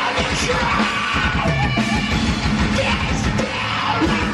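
Live heavy metal band playing loud, with a yelled vocal over distorted guitars and fast drumming, heard from the crowd.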